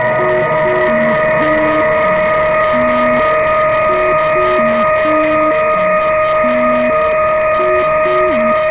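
Modular synthesizer jam: a steady sustained drone held over a sequenced bass line of short stepped notes, a few of which slide down in pitch.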